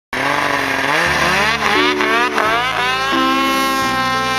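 Ski-Doo two-stroke snowmobile engine revving in a few rising sweeps. Music comes in about a second in and carries on alone after about two and a half seconds.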